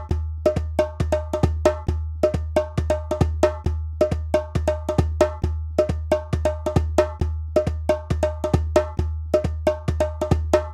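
Drum music: a fast, repeating pattern of hand-drum strikes with a ringing pitch, about four or five a second, over a deep pulsing hum that swells with the beat.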